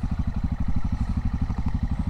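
Motorcycle engine running at low revs: a steady, evenly paced low throb of firing pulses, picked up on the bike.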